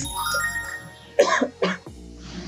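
A person coughing twice in quick succession, about a second in, over soft background music.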